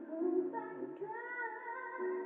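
A woman singing with band accompaniment, played through a television speaker. About halfway through she rises into a long held note with vibrato.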